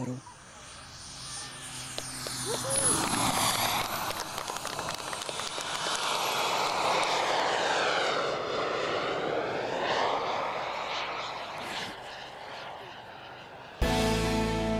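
A radio-controlled model jet aircraft's turbine engine flying past: a high whine over a rushing noise that swells as the model comes close, sweeps in pitch as it passes, and fades away near the end.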